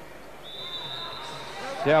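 Handball referee's whistle: one long, steady, high blast starting about half a second in, signalling the restart of play with a free throw from the 9-metre line. Faint sports-hall crowd noise runs underneath.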